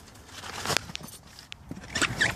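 Handling noise from a hand-held camera being swung about inside a car: a few irregular clicks and knocks over light rustling.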